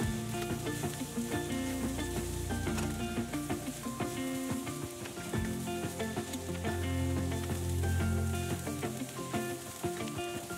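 Diced carrots, green beans and potatoes sizzling in hot oil in a wok as they are stirred with a wooden spatula, under background music.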